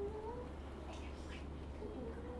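Faint voices of young children in a classroom, one drawn-out voice rising slightly in pitch about half a second in, over a steady low hum.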